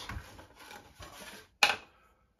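Faint rubbing and handling of a carbon-fibre rod at a workbench, followed by one sharp tick about a second and a half in.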